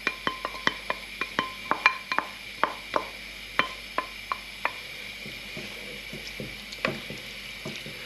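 Wooden spoon scraping and knocking cooked beef mince out of a bowl into a pot: a run of irregular clicks and knocks, several a second at first and thinning out after about five seconds.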